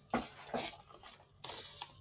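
Handling noise: a few brief rustles and scrapes of things being picked up and moved by hand.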